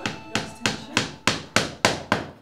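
Upholstery hammer tapping at a steady rhythm, about three to four sharp strikes a second, each ringing briefly.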